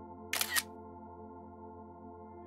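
Camera shutter sound from the iPad as a photo is taken: a quick double click about a third of a second in. Steady ambient background music plays underneath.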